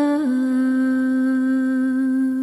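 A singer holding one long, steady note at the close of a Carnatic-style song in raga Darbari, after a small dip in pitch just after the start.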